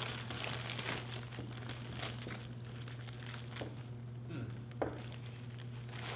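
Clear plastic packaging bag crinkling and rustling in the hands as it is pulled open and the contents are worked out, with irregular crackles throughout.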